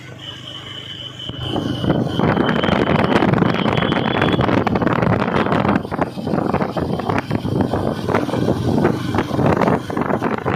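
Motorcycles in a moving convoy with engines running, largely covered from about two seconds in by loud wind buffeting on the microphone. A thin, steady high tone sounds through the first four seconds or so.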